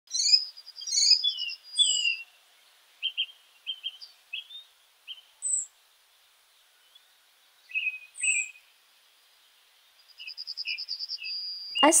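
Birds chirping: short high chirps and whistled sweeping notes separated by quiet gaps, with a rapid trill in the last couple of seconds.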